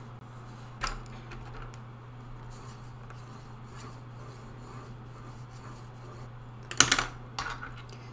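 Quiet brushwork with a low steady hum underneath, a single small tap about a second in, and a short cluster of sharp clicks near the end as a paintbrush is put down and swapped for another.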